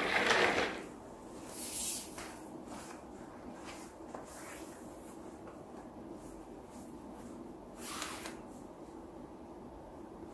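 Rustling and scraping of a leather belt being threaded through the loops of a pair of jeans and fastened. There is a louder brush of clothing in the first second and short rustles near two seconds and eight seconds.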